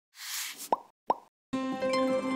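Intro logo sound effects: a brief swelling whoosh, then two quick pops that sweep upward in pitch, about half a second apart. About three-quarters of the way through, a sustained chord of intro music comes in.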